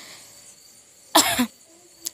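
A woman coughs once, a single short cough about a second in, against faint room noise.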